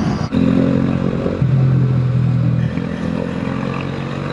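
Motorcycle engine running at a steady pitch under way, with wind rush over the helmet-mounted microphone; a single brief knock sounds about a third of a second in.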